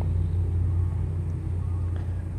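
Steady low rumble with no speech.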